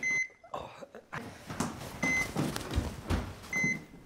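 Hospital heart monitor beeping: a short single-pitched beep about every one and a half to two seconds, marking the patient's pulse. Under it are rustling and a few soft knocks.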